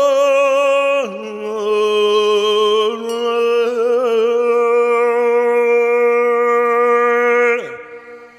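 Slow meditation music: a single sustained vocal chant holding long notes with a slight waver. It steps down in pitch about a second in and slides down near the end.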